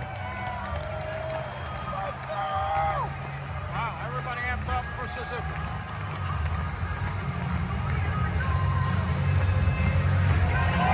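Wrestling entrance music over an arena sound system, its bass steady, with crowd voices on top. The music and crowd get louder toward the end.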